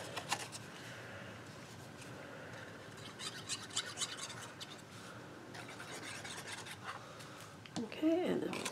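Faint rubbing and rustling of a small cardstock strip being handled and glued, with two spells of light scratchy clicks about three and six seconds in.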